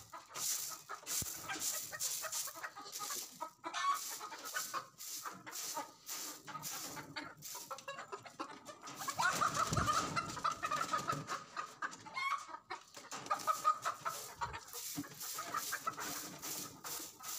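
Domestic hens clucking and squawking, unsettled by the cleaning of their coop, with a louder burst of squawking a little past the middle. Under the calls come short, repeated scratchy strokes of a broom sweeping the coop floor.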